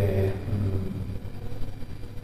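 A pause in a man's speech, filled by a steady low hum in the room, with the tail of his voice at the very start.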